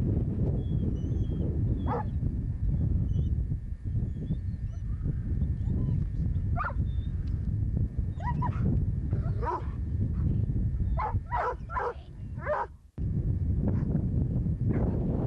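Dogs yelping and whining in short, pitched calls: one, then a scattered handful, and a quick run of four near the end. Under them runs a steady low rumble of wind on the microphone.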